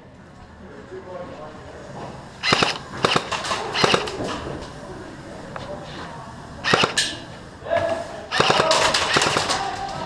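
Airsoft guns firing in rapid bursts of sharp clicks: a run of shots about two and a half seconds in, a short burst near seven seconds, and a longer burst from about eight and a half seconds.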